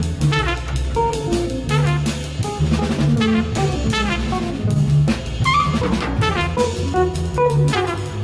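Free-improvised jazz: a cornet playing lines over busy drum kit and cymbal strokes, with low bass notes underneath.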